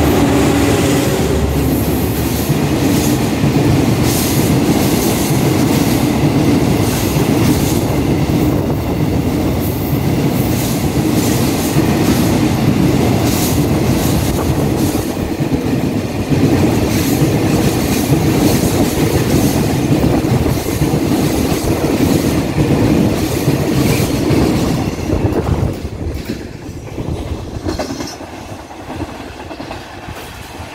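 Diesel-hauled freight train of tank wagons passing through at speed: the locomotive's engine at the start, then a long steady run of wheels clattering over the rail joints. It fades away after about 25 seconds as the last wagons go by.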